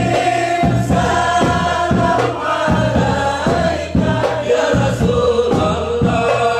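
A group of men chanting a Sufi hadrah dhikr together, led by a voice over a microphone, with held notes under the chant. A steady low beat runs through it, about two and a half per second.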